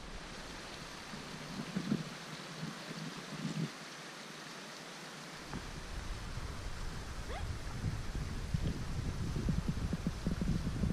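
Wind buffeting the camera's microphone, a low rumble that sets in about halfway through and grows louder, with a few soft crunches of footsteps in deep snow.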